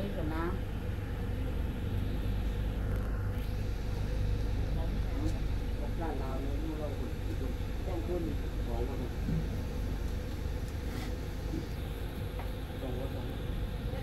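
Steady low rumble with a constant faint hum, under quiet, scattered voices speaking in short snatches.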